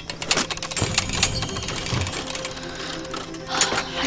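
A magical sound effect for the glowing treasure box: a fast run of rapid clicking and ticking over light music, densest in the first second and a half, then thinning out.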